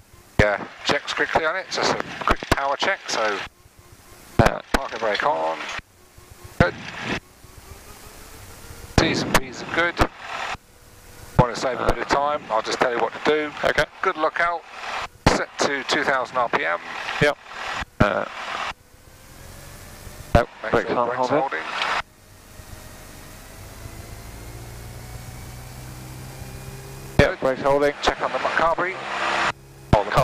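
Voices talking in the cockpit over the steady hum of a light aircraft's piston engine. A few seconds of engine hum without talk come near three-quarters of the way through.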